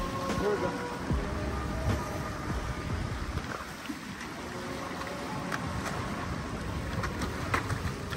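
Waves washing against the jetty's boulders and wind on the microphone make a steady rushing noise, with a few faint clicks and knocks through it.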